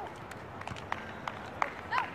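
Distant voices of people playing volleyball in the open air, with several short, sharp taps, the clearest about one and a half seconds in.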